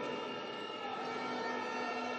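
Steady basketball-arena ambience under the broadcast: a continuous crowd and hall background with held steady tones running through it, and no sharp hits.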